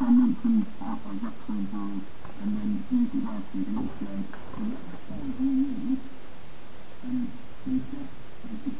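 Podcast speech played from an iPod through a homemade loudspeaker made of a plastic recycling bin, a neodymium magnet and a 600-turn coil. The voice comes out thin and muffled, squeezed into a narrow low band, so that the words are hard to make out.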